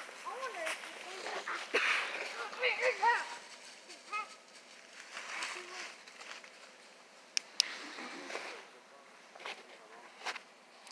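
Indistinct voices calling out in the first few seconds, too unclear to make out words, then quieter, with two sharp clicks about seven and a half seconds in.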